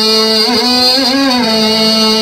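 A man chanting on a long held note that bends through a short melodic turn about halfway through, then settles steady again.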